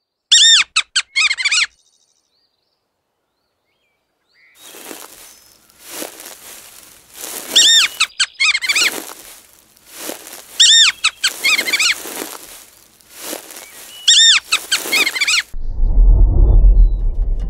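Naked mole rat squeaking: a quick run of high squeaks, then after a short silence a scratchy, rustling noise that comes and goes, broken three times by bursts of high chirping squeaks.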